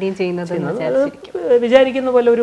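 Speech only: a person talking, with some drawn-out vowels held at a level pitch.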